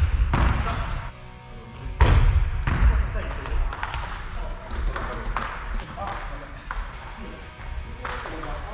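Table tennis rally: the ball clicking sharply off rackets and the table in quick succession, with a few low thuds in between.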